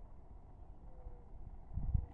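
An owl, which the owner believes is a great horned owl, hooting faintly: a short, steady low note about a second in. Low wind rumble on the microphone underneath swells briefly near the end.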